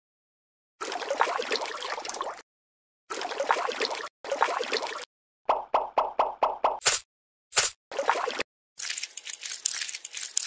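Wet mud sound effects in short edited clips separated by dead silence: stretches of squelching, then a quick run of about six plops a little past halfway, and more squelching near the end.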